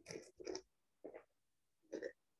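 A wine taster sipping and slurping champagne in the mouth: a few short, wet mouth noises with pauses between them.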